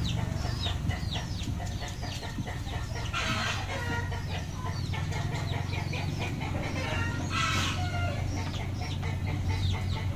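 Chickens calling in a coop: a steady run of short, high, falling peeps, typical of chicks, with hens clucking and two louder squawks at about three and seven and a half seconds. A steady low hum runs underneath.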